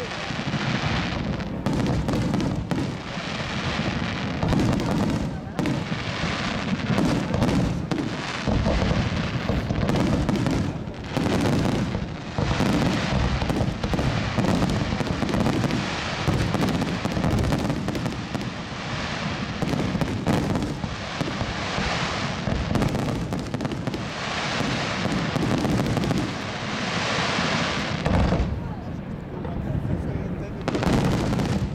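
A dense, unbroken barrage of aerial firework shells bursting in quick succession, bangs overlapping with crackle: the finale of a fireworks display.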